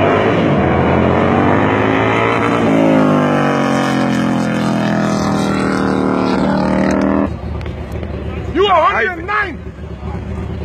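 Harley-Davidson bagger motorcycles' V-twin engines at full throttle in a drag run, the pitch rising, dropping at a gear change about three seconds in and climbing again before cutting off about seven seconds in. A voice calls out near the end.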